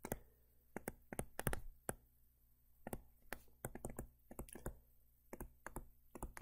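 Faint, irregular ticks and taps of a stylus on a tablet screen during handwriting, a few clicks a second with short pauses between.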